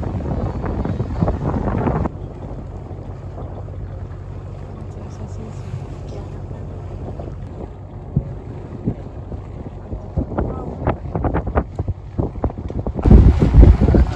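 Wind buffeting the microphone on the deck of a moving tour boat, loud for the first two seconds. Then it drops to a steady low hum from the boat's engine under lighter wind. Loud wind rumble returns near the end.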